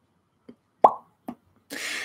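Mouth sounds just before speaking: a loud lip pop a little under a second in, a softer mouth click shortly after, then a quick breath in.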